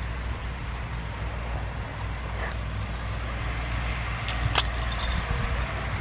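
Steady low outdoor rumble with no speech, and a single sharp click about four and a half seconds in.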